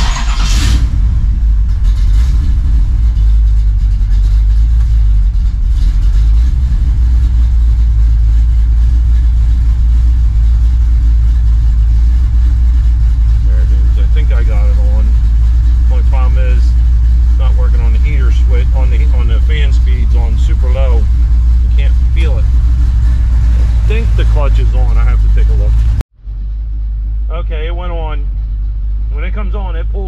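A 1969 Chevelle's small-block V8 starts up with a sudden burst and then idles with a steady, loud low rumble. About 26 seconds in the sound breaks off for an instant and returns somewhat quieter, still idling.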